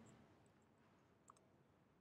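Near silence, with one faint computer keyboard click a little past the middle.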